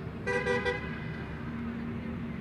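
A vehicle horn tooting three quick times in a row, over a steady low hum of outdoor background noise.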